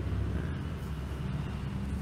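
Steady low hum of background room noise with faint hiss, no other distinct event.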